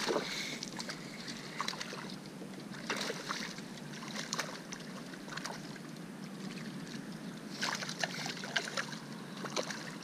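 Water splashing and sloshing around a fishing kayak as a hooked fish thrashes at the surface and the boat is repositioned. Scattered short splashes and knocks come every second or two over a steady faint hiss.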